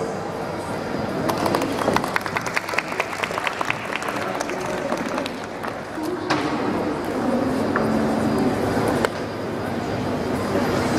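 Audience applauding with separate claps for about the first six seconds. Then a waltz's instrumental backing music begins.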